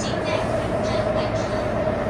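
Taipei Metro C301 train running through an underground tunnel, heard from inside the car: a steady rumble of wheels on rail with a constant hum running through it.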